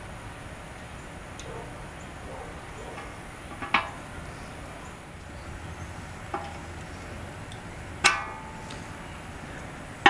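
Pliers working a stuck plastic fuel strainer out of a fuel tank outlet: quiet handling with a few short squeaks, the loudest about eight seconds in.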